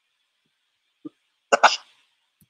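A person coughs twice in quick succession about one and a half seconds in, after a second of near silence.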